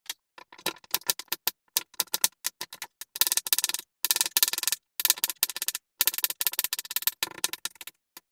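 Kitchen knife chopping a carrot on a wooden cutting board: quick knocks of the blade on the board, a few scattered at first, then fast runs of rapid strokes with short pauses between them.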